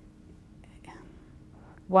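A woman's voice in a pause between words: faint breaths and whispered mouth sounds through the close microphone, then her speech starts again right at the end.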